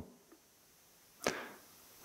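Near silence broken about a second in by one short, sharp intake of breath close to a headset microphone, fading within a third of a second.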